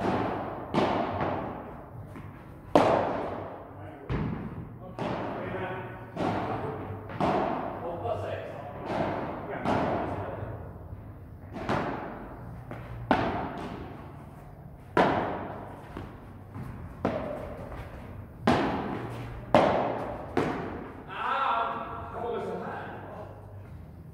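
Padel ball struck back and forth with padel rackets in a rally, a sharp hit about every second, each ringing out in a long echo in the indoor hall.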